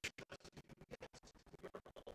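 Faint, rapid stuttering pulses, about ten a second and evenly spaced: a glitching, chopped-up audio track.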